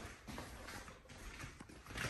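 Faint footsteps of a German shepherd on a hardwood floor: a few light clicks of its claws as it walks to the door.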